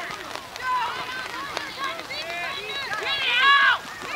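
Several voices shouting across a soccer field during play, with short calls overlapping one another and the loudest burst of shouting near the end.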